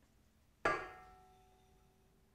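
A single metallic knock on a stainless steel stand-mixer bowl about half a second in, with the bowl ringing on and fading over about a second.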